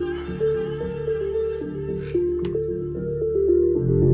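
Recorded music playing through Bose 4000XL loudspeakers driven by a Yamaha AX-892 stereo amplifier. It is a song's intro: a melody of short, bell-like notes over a steady deep bass, with the bass growing stronger near the end.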